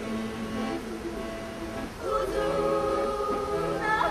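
Women's choir singing long held notes with accordion accompaniment, softer at first, then fuller and louder from about two seconds in.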